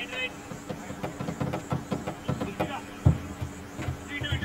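Indistinct voices of people talking near the microphone, with a single dull thump about three seconds in.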